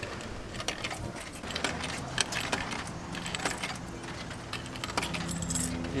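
Coins clinking as they are fed one after another into a drink vending machine's coin slot: a scatter of short, sharp metallic clicks. A low, steady hum runs underneath.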